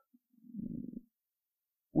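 A pause in a man's speech, with one brief, low, grainy throat sound from him about half a second in, lasting about half a second; otherwise near silence.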